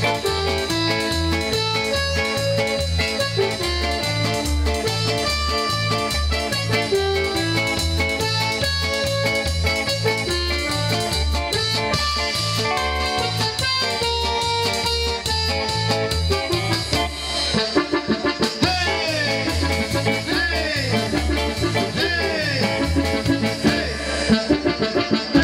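Live band music: drum kit, bass, electric guitar and keyboards playing a song with a steady, even bass beat. Late on the top end thins and a bending, wavering melody line comes to the front.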